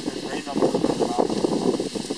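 Gusty wind noise, with choppy lake water moving around a pontoon boat, and a faint voice.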